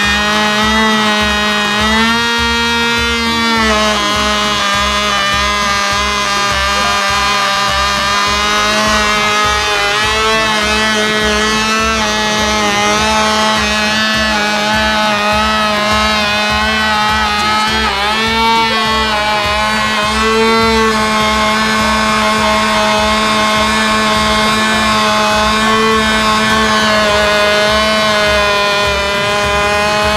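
Small glow-plug model aircraft engine running at high speed with a steady buzz. Its pitch rises briefly about two seconds in and wavers again about two-thirds of the way through.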